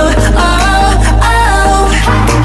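K-pop song playing: a melody that glides in pitch over a deep, sustained bass, steady and loud throughout.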